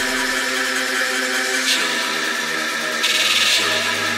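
Underground techno from a DJ mix, in a breakdown of sustained synth tones with the low bass dropped out. About three seconds in the bass comes back, together with a short bright hiss.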